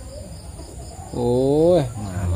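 Steady high-pitched insect trilling, typical of crickets, in the background. About a second in, a person's drawn-out voice rises and then falls in pitch for about half a second, and it is the loudest sound.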